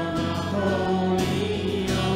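Worship band playing a song with acoustic guitars and bass while several voices sing together, holding long notes.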